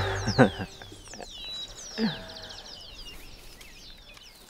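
Several birds chirping and calling in open countryside, with a brief louder sound about half a second in and a lower falling call about two seconds in; the sound fades away toward the end.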